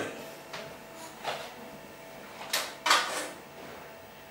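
A few short scrapes and soft knocks, the two loudest about two and a half and three seconds in: handling noise as a small dog is set onto the plastic pan of a pet scale.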